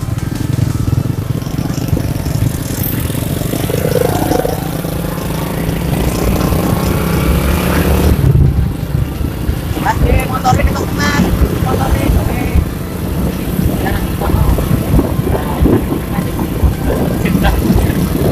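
Motorcycle riding along a road, its engine running under a steady low rumble of wind on the microphone.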